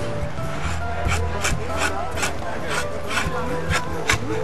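Drawknife shaving wood off a black locust bow stave in quick repeated scraping strokes, about two or three a second.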